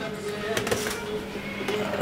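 An electric oven humming steadily with its door open, with a few light knocks as a metal baking pan is lifted out of it.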